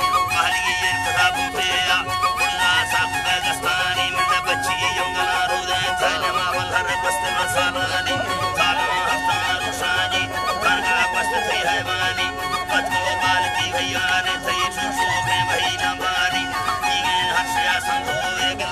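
Balochi folk music played live on a bowed suroz fiddle and wooden flutes: a wavering melody over held drone notes and an even pulse.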